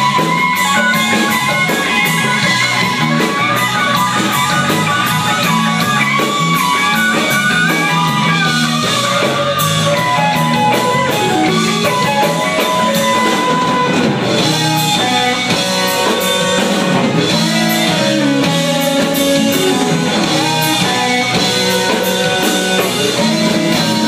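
Live blues-rock band playing: electric guitar lead lines with long held and bending notes over drums and electric guitar accompaniment.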